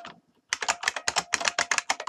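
Computer keyboard being typed on fast: one or two lone key clicks, then from about half a second in a quick, even run of keystrokes, roughly ten a second.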